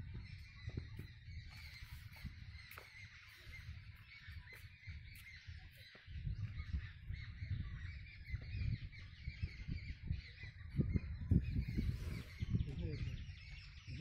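Wind rumbling on the microphone in uneven gusts, with small birds chirping steadily in the background.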